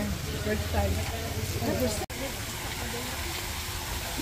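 Faint background voices over a steady low hum and hiss, with the sound cutting out for an instant about two seconds in.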